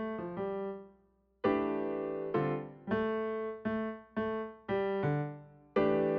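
Casio AP-470 digital piano playing a slow cool-jazz style passage. A phrase ends in the first second and is followed by a brief silence. Then come about eight chords, struck every half second or so, each left to ring and fade.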